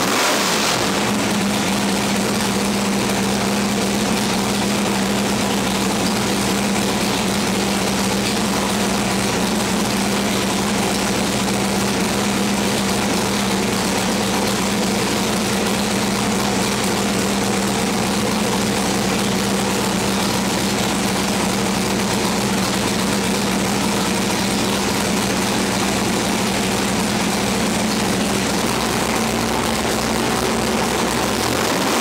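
A 1972 L88 427 big-block Chevrolet V8 with a solid-roller cam runs on an engine dyno. Its pitch shifts briefly at the very start, then it holds one steady speed.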